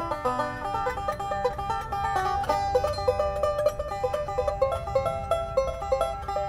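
A banjo, a new Stelling prototype, played in a quick, steady stream of picked notes in a bluegrass style.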